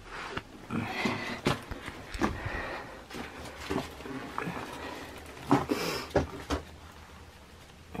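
Irregular scuffs, scrapes and small knocks of someone shuffling through a small stone chamber, with the camera being handled, heard with the close, boxy sound of a small enclosed space.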